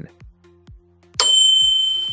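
A bright notification-bell ding from a subscribe-button sound effect, striking about a second in and ringing on as it slowly fades, over quiet background music.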